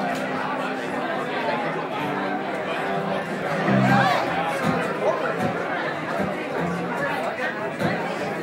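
Crowd chatter in a bar, with a few low held notes from the band's instruments sounding under it.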